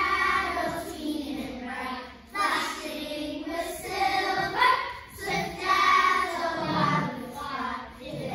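A group of young children singing together, in sung phrases with brief breaks about two and five seconds in.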